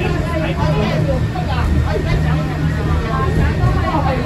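Voices talking inside a Peak Tram funicular car over the car's steady low running rumble on its track.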